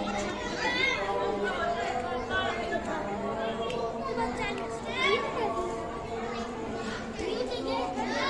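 Overlapping chatter of several people, with high children's voices, in a large roofed hall.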